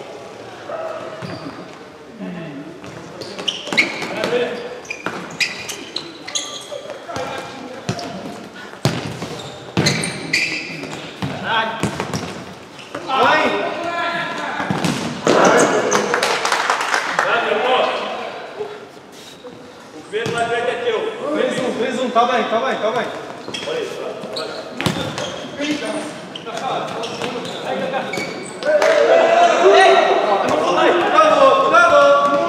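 Futsal ball being kicked and bouncing on the hard floor of a large sports hall, the sharp knocks ringing through the hall amid players' shouts and calls.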